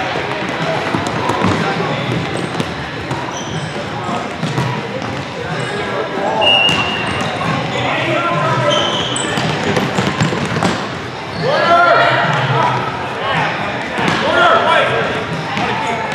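Futsal ball being kicked and bouncing on a hardwood gym floor, with players and spectators calling out, all echoing in the large hall. The voices are loudest in the last few seconds.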